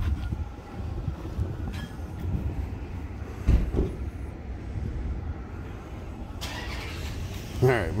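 Low, uneven outdoor rumble with a single loud thump about three and a half seconds in, then a man's voice at the very end.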